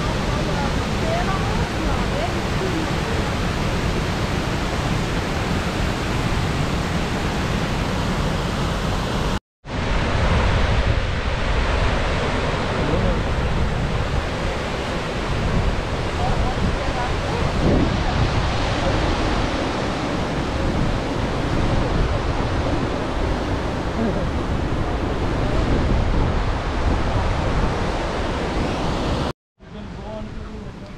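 Krka river waterfall cascades, a steady rush of falling water, broken by two brief silent gaps, about a third of the way in and near the end.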